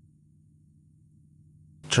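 Near silence: a faint steady low hum of room tone, then a narrating voice begins speaking near the end.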